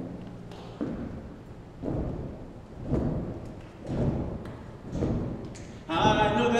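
Soft thuds in a steady beat, about one a second, in a large reverberant room. A choir comes in singing at the very end.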